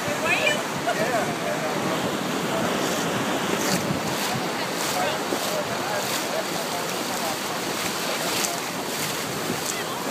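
Shallow ocean surf washing steadily, with wind buffeting the microphone and short sharp hisses of spray here and there. A few faint voices in the first second.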